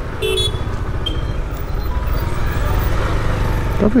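Bajaj Avenger 220's single-cylinder engine running under way, a low pulsing rumble with wind and road noise, building slightly. A short vehicle horn toot near the start.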